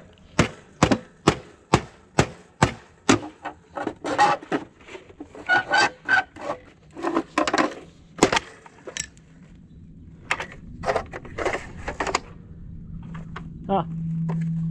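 A hatchet striking a small ATM cash box, about two sharp knocks a second for three seconds, then louder clattering and prying of the box's plastic and metal as it is forced open, ending in a few lighter clicks.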